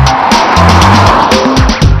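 Background music with a steady beat, over a Mercedes-Benz A-Class driving past, its road noise swelling and fading about a second in.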